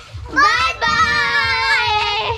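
A child's high-pitched voice calling out: a short rising sound about a third of a second in, then one long held note drawn out for over a second.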